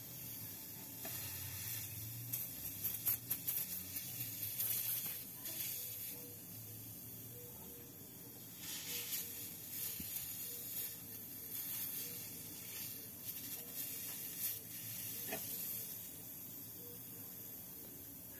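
Gas hissing out of a puncture in an aluminium box-type refrigerator evaporator under a pressure test, sizzling and crackling through soap foam spread over the hole: the sign of a leak from a pierced evaporator. The hiss is faint and steady, with irregular crackles as the bubbles form and burst.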